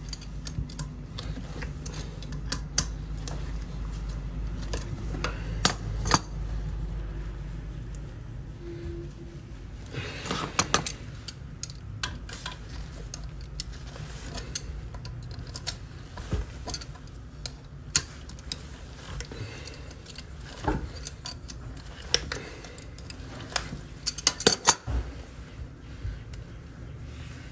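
Channel-lock pliers clinking and scraping against the toilet's metal closet bolts and nuts at the base of the bowl while the nuts are worked off. Scattered metallic clicks, bunched about ten seconds in and again near the end.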